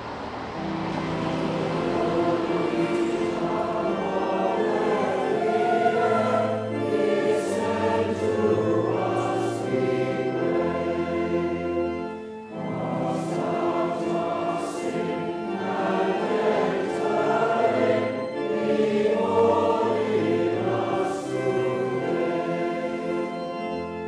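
A choir singing in slow, held phrases, breaking off briefly about twelve seconds in before the next phrase begins.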